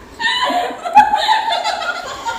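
A woman laughing hard and continuously, with a short sharp click about halfway through.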